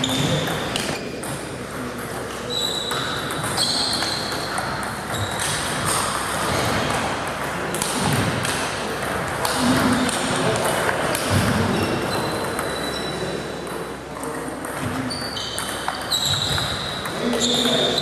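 Celluloid-type table tennis ball struck back and forth in rallies, sharp clicks off the bats and the table, some ringing briefly. The hall echoes, and people talk in the background.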